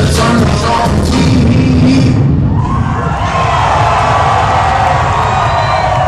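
Loud hip-hop beat over a concert PA with the crowd cheering. A little over two seconds in, the beat's sharp top end drops away and a smoother, sustained sound carries on under the crowd.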